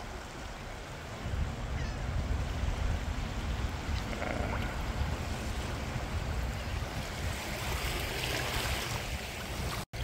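Wind buffeting the microphone with a low rumble, starting about a second in, over small waves lapping in a shallow bay where the waves are weak.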